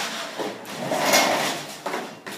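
Pull-down projection screen retracting, rolling up into its case above the board: a rushing rattle that swells to a peak about a second in, then a sharp clack near the end.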